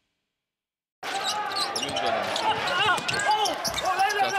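Silence for about a second, then live basketball game sound cuts in: a basketball bouncing on the hardwood court, with short squeaks and voices in the arena.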